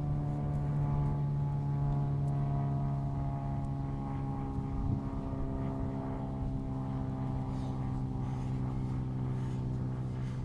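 A steady engine drone with a low hum and its overtones, the pitch sinking slowly.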